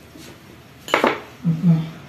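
A metallic clatter: one sharp, bright clink about a second in, then two shorter, duller knocks close together.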